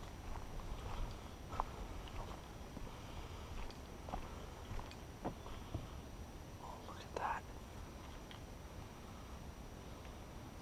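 Footsteps on a leaf-littered forest trail, irregular soft scuffs and crunches about every half second to second over a low rumble of wind and camera handling, with a brief louder sound about seven seconds in.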